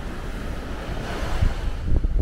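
Small waves breaking and washing up a sand beach, the wash swelling about a second in. Wind buffets the microphone with low rumbles.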